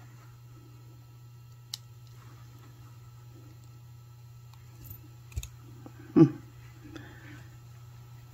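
Small metal clicks of jewelry pliers working a tiny jump ring: one sharp click about two seconds in and two lighter ones around five seconds, over a steady low hum. A short 'hmm' near the end is the loudest sound.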